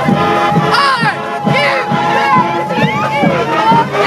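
A crowd of young people cheering and shouting along a parade route, many short whoops rising and falling over one another, with a steady high note held for about three seconds under them.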